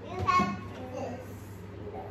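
Young children's voices at play: a short high-pitched child's exclamation in the first half-second, then quieter sounds.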